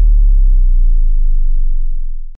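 Low synth bass note held alone at the end of an electronic dubstep remix, its pitch slowly sliding down and starting to fade near the end.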